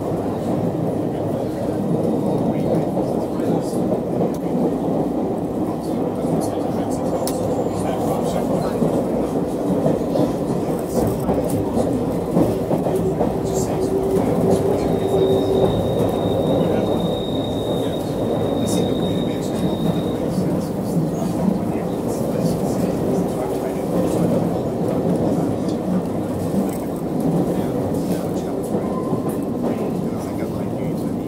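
London Underground Circle Line train running between stations, heard from inside the carriage: a steady rumble of wheels on track with scattered light clicks, and a thin high whine for a few seconds about halfway through.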